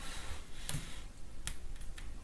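Two faint, short clicks about a second apart over quiet room tone.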